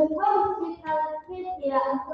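A child singing, short phrases of held notes with brief breaks between them.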